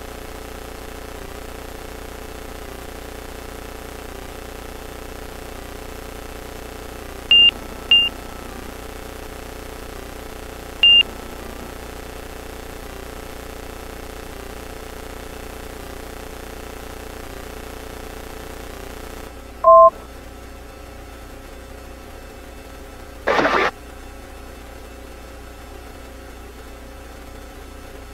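Van's RV light aircraft's engine at takeoff power as the plane rolls down the runway and climbs out, a steady drone. Three short high electronic beeps come about 7 to 11 seconds in. A louder two-tone beep sounds near 20 seconds, followed a few seconds later by a brief burst of hiss.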